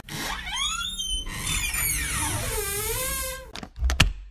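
A door creaking open, with a squeaky pitch that rises, then falls and wavers, followed by a few sharp clicks near the end.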